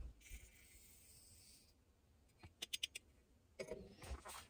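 Faint hiss of black powder trickling from a small scoop into a paper cartridge tube, followed a little past halfway by a quick run of light clicks.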